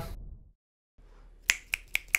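A person snapping their fingers, three quick sharp snaps about a quarter second apart in the second half, after a brief dead silence.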